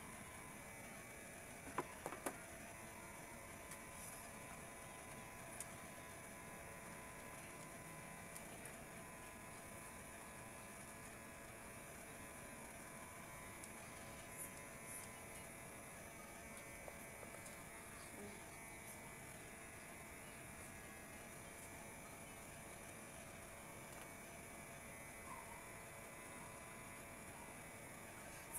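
Faint steady hum with thin steady tones in a quiet room, with a few soft clicks about two seconds in.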